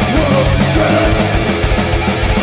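Old school thrash death metal: distorted electric guitars and bass over fast programmed drums, with a rapid kick-drum pattern.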